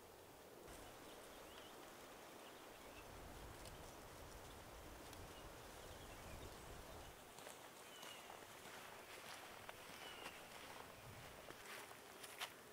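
Near silence: faint open-air ambience with a low rumble for the first several seconds and a few faint, short chirps.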